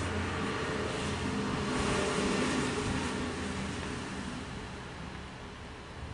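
Steady low rumble of a motor vehicle with hiss over it, a little louder about two seconds in and fading away toward the end.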